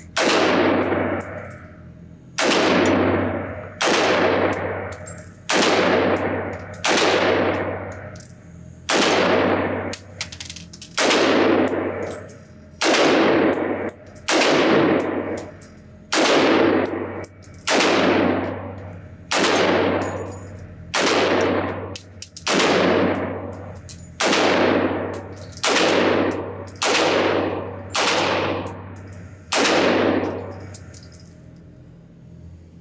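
American Resistance takedown AR-15 pistol in 5.56 fired in single shots at a steady pace, about twenty shots at roughly one every second and a half. Each shot echoes and fades in the indoor range.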